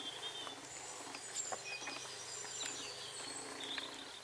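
Faint bird chirps and twitters over quiet outdoor background noise, with a low steady hum underneath.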